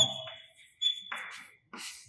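Chalk writing on a blackboard: a few short, quiet scratchy strokes, with a faint steady high-pitched whine underneath for the first part.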